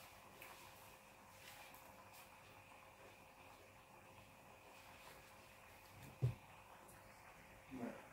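Near silence: quiet kitchen room tone with a faint steady hum, broken by one brief knock about six seconds in.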